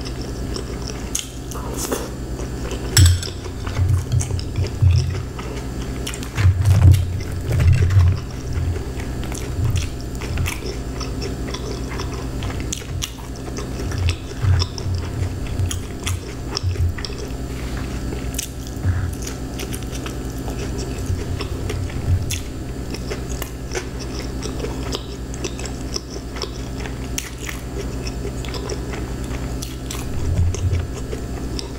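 Close-miked chewing of a mouthful of creamy coleslaw, with wet mouth clicks and irregular low thuds that are busiest in the first third and lighter later on.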